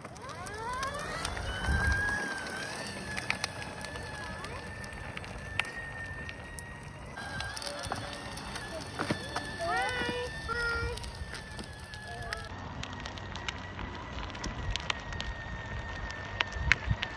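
Motor of a homemade scooter-stroller ride-on whining as it drives, rising in pitch as it gets going in the first couple of seconds and then holding steady. A child's high-pitched squeals come in briefly near the middle.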